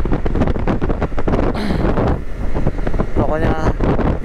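Wind rushing and buffeting over the microphone of a motorcycle on the move, with a short stretch of voice near the end.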